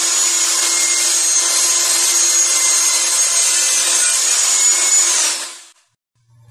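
Table saw ripping a three-quarter-inch board lengthwise: a steady blade whine over the hiss of the cut. The whine dips in pitch about five seconds in and the sound fades out.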